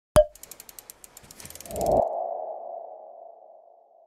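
Logo-animation sound effect: a sharp click, a run of quick ticks and a swelling whoosh, then a single ringing tone that fades out over about two seconds.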